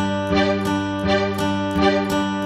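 Music: an acoustic guitar strummed in a steady rhythm, about three strums a second, with no singing.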